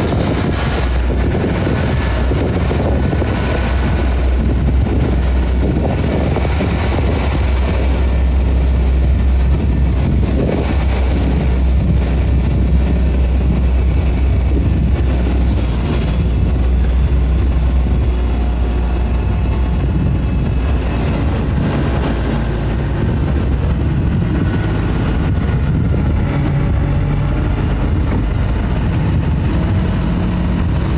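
Mobile crane's diesel engine running steadily, a continuous low drone, as the crane works to lower a wooden catboat on slings.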